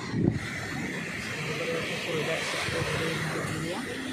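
Small waves breaking and washing up a sandy beach, a steady rushing of surf. A brief low thump right at the start.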